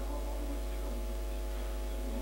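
Steady low electrical mains hum running through the recording, with its evenly spaced overtones, over faint room sound.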